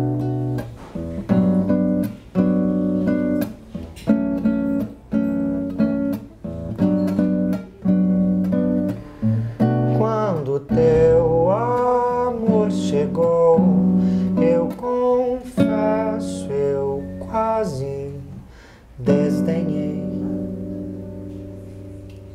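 Acoustic guitar strummed in a steady rhythm, with a sung melody coming in around the middle. A final chord is struck near the end and left to ring out and fade.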